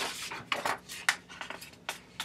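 Paper pages of a picture book being turned by hand: a quick run of short, crisp rustles and flicks.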